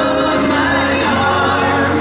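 Live pop concert: a male vocal group singing together in harmony over a backing band.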